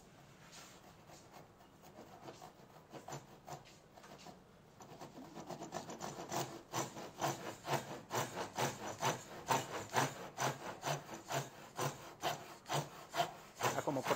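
Hand saw cutting a tenon in a small clamped block of wood. The back-and-forth strokes come a few times a second, faint at first and growing clearly louder from about halfway through.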